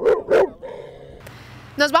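Pit bull-type dog barking twice in quick succession, short and loud, right at the start.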